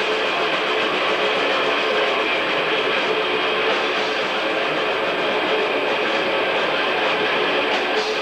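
Death metal band playing live: electric guitars and drums in one dense, unbroken wall of sound, picked up by a camcorder's microphone in the hall.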